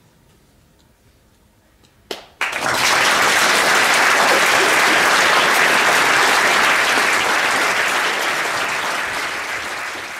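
Theatre audience applauding. The applause breaks out suddenly about two seconds in after a quiet pause, holds as a dense, even clapping, then slowly fades toward the end.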